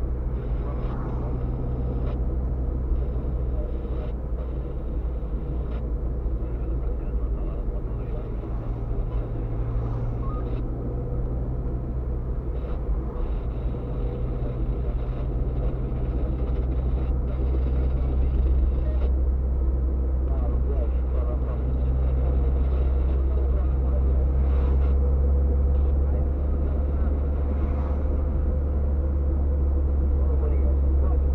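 Steady low rumble of a car's engine and tyres on wet asphalt, heard from inside the cabin while driving, growing a little louder in the second half.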